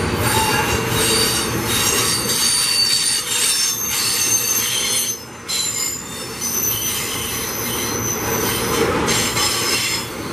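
Loaded iron-ore gondola wagons rolling past, their steel wheels squealing against the rails in several high, shifting tones over a continuous rumble of wheels on track. The sound briefly drops about five seconds in.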